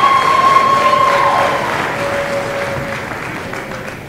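Audience applause, with a single held cheer ringing over it for the first second and a half, dying away near the end.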